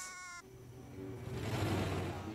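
A baby's high, held wailing cry from the cartoon's audio, cut off about half a second in, followed by a quieter low, steady hum that grows louder toward the end.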